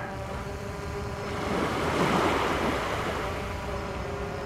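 Wind and small waves rushing on a lakeshore, swelling to a peak about two seconds in and easing off, over the steady buzz of a 3DR Solo quadcopter's propellers.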